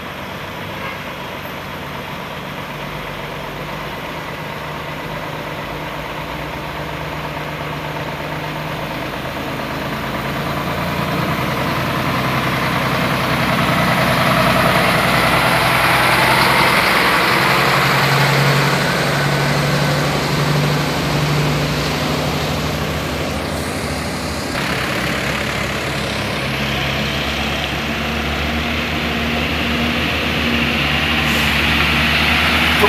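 Heavy diesel truck engines running. A big truck draws close and passes, loudest about halfway through. Another truck comes nearer toward the end.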